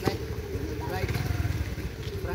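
Brief voice fragments over a steady low rumble, with a single sharp knock right at the start.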